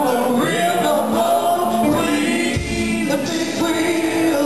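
Live soul-rock band music with a woman singing lead over electric guitar and the full band.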